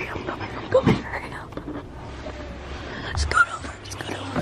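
Whispering close to the microphone in short, broken bits, with a few small clicks.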